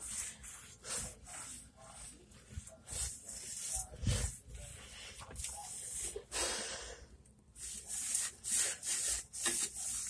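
A brush scrubbing a granite countertop and backsplash in short, uneven strokes, with a brief pause about seven seconds in.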